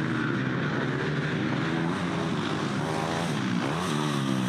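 Off-road motorcycle engine running on the track, its pitch rising and falling with the throttle. The revs swing more sharply near the end as the rider comes close.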